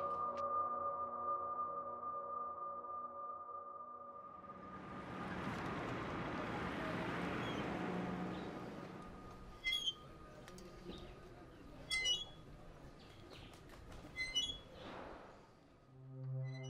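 Film score: a held chord fades out over the first few seconds, then a soft rising-and-falling ambient swell, with short high chirps like birds several times in the second half.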